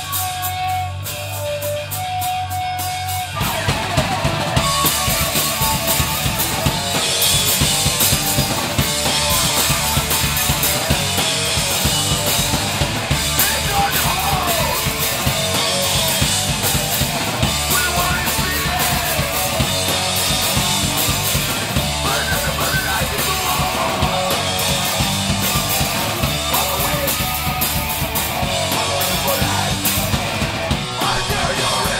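A hardcore punk band playing live and loud: a guitar riff on its own for about three seconds, then the drums and full band crash in and keep driving.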